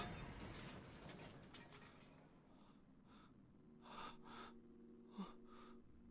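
Near silence: a faint rush of noise dies away, then come a few soft breaths and a quiet low held tone.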